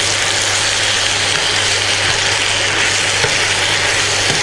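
Boiled macaroni frying with onion-tomato masala in an oiled pan on an induction cooktop, sizzling steadily while it is stirred. A low steady hum runs underneath.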